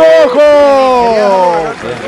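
A man's long drawn-out shout, held for over a second with its pitch slowly falling, as the winning team is hailed; broken talk follows near the end.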